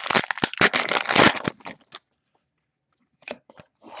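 Foil trading-card pack wrapper being torn open and crinkled in the hands: a dense crackling for about a second and a half, then silence, with a few light crinkles near the end.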